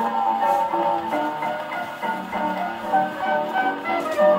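A 1929 Madison 78 rpm shellac record of a hot dance band playing on an acoustic phonograph with a brass gooseneck tone arm. The band plays a busy passage of quick, bright melodic runs over a steady beat.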